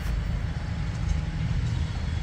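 Steady low rumble of outdoor background noise, with no single distinct event.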